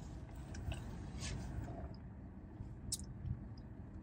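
Faint sipping and mouth sounds from drinking a frozen slush through a straw, with a few soft clicks, over the steady low hum of a car's air conditioning.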